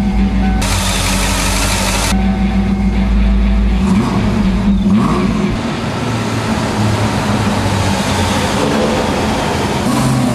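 Ford SN95 Mustang engine running and revving, its pitch rising and falling about four to five seconds in and again near the end. A loud rush of hiss-like noise runs through the first two seconds.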